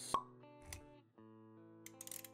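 Short intro music sting: a sharp pop sound effect just after the start, then plucked guitar notes held and ringing, with a second softer click partway through.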